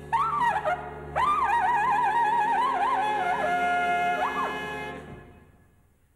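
Big band jazz: a trumpet plays an ornamented solo line with vibrato over a chord held by the band, ending on a long note with an upward bend. The band's chord stops about five seconds in and dies away to near silence.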